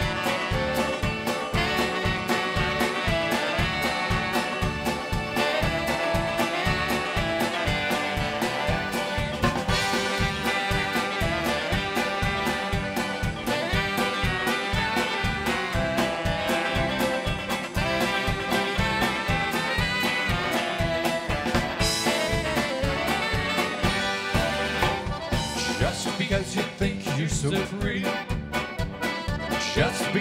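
Live Cleveland-style polka band playing an instrumental passage on accordion, saxophones, banjo and drum kit, over a steady, even beat.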